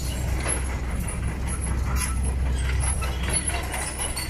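Steady low rumble of engine and road noise heard from inside a moving vehicle, with a few faint rattles.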